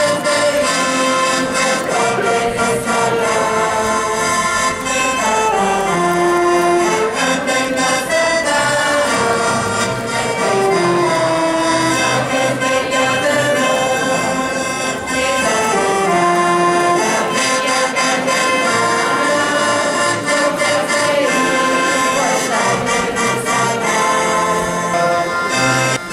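Accordion, acoustic guitar and two saxophones playing a traditional Catalan caramelles song, with a crowd singing along from song sheets. The melody moves in repeated falling phrases.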